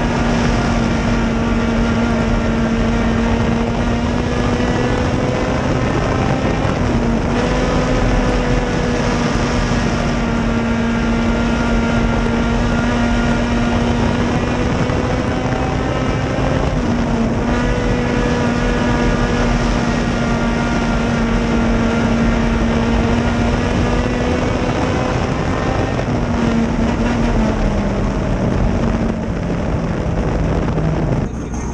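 Dirt late model race car's V8 engine running hard at a near-steady pitch, heard from inside the cockpit with heavy wind and road noise, with two brief slight drops in pitch about seven and seventeen seconds in. Near the end the pitch steps down as the car slows after taking the checkered flag.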